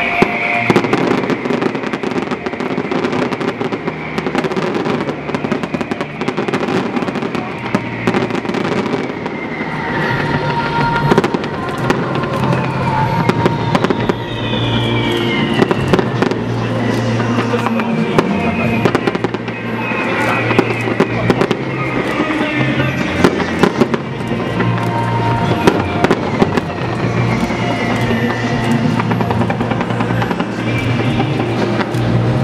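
Aerial fireworks bursting and crackling in rapid, continuous succession, with sharp bangs scattered throughout. Music plays alongside the explosions.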